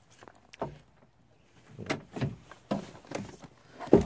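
Plastic interior door trim panel of a 2005 Honda Accord being slid upward and lifted off the door: a few scattered plastic clicks and knocks as it comes free.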